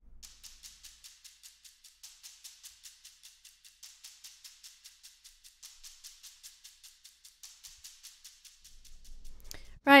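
Sampled shakers from the LA Modern Percussion library, filtered down to their high frequencies and run through an EchoBoy ping-pong delay, playing a fast, even pattern of thin high ticks.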